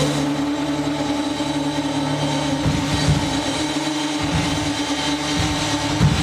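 Live band holding one long, steady sustained note as a drone, with little rhythm underneath.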